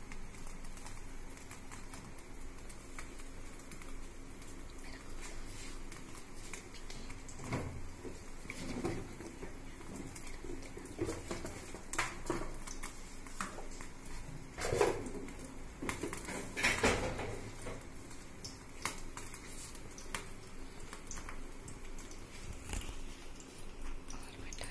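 Occasional clinks and knocks of kitchen utensils and cookware, with a few louder ones about halfway through and again about two thirds of the way through, over a low steady hum.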